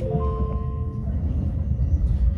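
Stadler ETR 350 electric train heard from inside the passenger cabin as it picks up speed: a steady low running rumble, with a brief chord of several high steady tones in about the first second.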